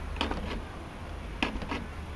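Iron gate's edge scraping against the iron fence post as the gate is swung, twice, about a second apart. The heat has expanded the metal and closed the gap, so the two rub.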